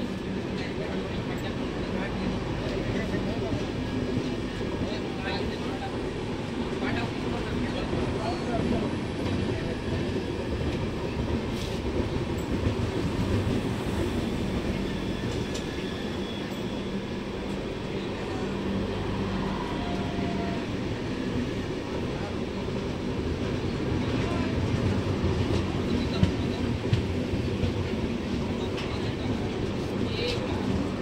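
Passenger train coaches of the Kota Patna Express running past on the rails close by: a steady rumble of wheels on track that holds without a break, with a few faint clicks.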